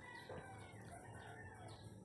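Near silence: faint room tone with faint bird calls in the background.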